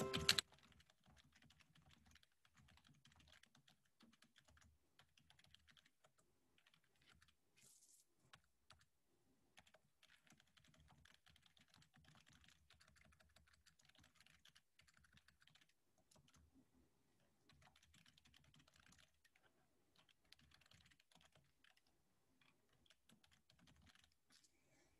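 Faint, irregular typing on a computer keyboard, after a brief electronic chime right at the start.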